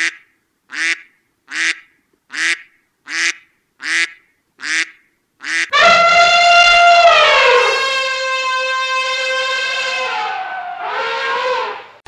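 A mallard duck quacks eight times in steady succession, about one quack a little under every second. About halfway through, an elephant trumpets once, long and loud, falling in pitch, then gives a second, shorter trumpet near the end.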